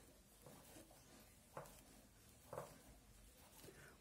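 Near silence, with two faint clicks about a second apart from plastic knitting needles being worked through the stitches.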